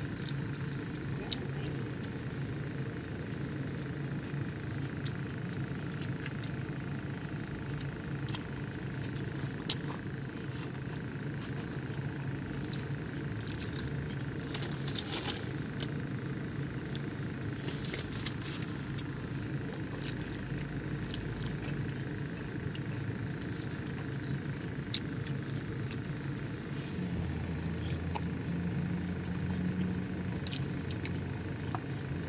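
Steady low background hum with scattered faint clicks and light rustles throughout, one sharper tick about ten seconds in.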